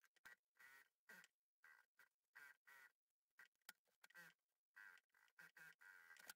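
Near silence, with faint, brief, irregular sounds scattered through.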